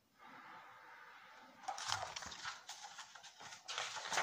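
Faint handling noise as a hardcover picture book is moved and lowered: a soft steady breathy hiss, then irregular rustling and scuffing from about two seconds in.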